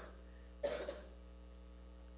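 A single short cough a little over half a second in, over a faint steady electrical hum.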